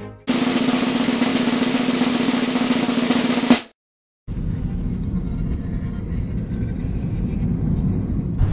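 A drum roll lasting about three seconds that cuts off suddenly, then half a second of silence and a low steady rumble.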